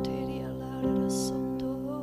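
Korg D1 digital stage piano playing sustained chords in a slow worship accompaniment, with a new chord struck about a second in.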